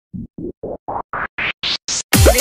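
DJ build-up effect at the start of a Bhojpuri DJ song: eight short noise hits, about four a second, each brighter and higher than the last, rising toward the drop.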